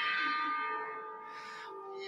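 Several steady, ringing musical tones that slowly fade, with a lower tone entering near the end.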